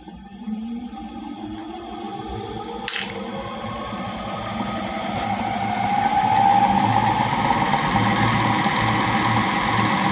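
Electric motor of a balancing demonstrator rig spinning up a belt-driven rotor disk, its whine rising in pitch and growing louder over about six seconds, then running steadily at full speed. This is the rotor coming up to speed for a trim run, with correction weights fitted at positions four and five. A single click comes about three seconds in.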